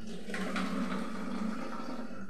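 Steady hiss from a steel pan of milk heating on a gas stove burner.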